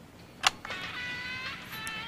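A sharp click, then faint, tinny music of held chords leaking from toy headphones.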